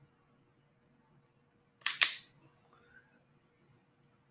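Cigar cutter snipping the cap off a large cigar: two sharp clicks a fraction of a second apart, about two seconds in.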